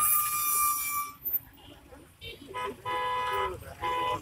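Vehicle horns tooting: one held note that stops about a second in, then several short toots near the end, with people's voices in the background.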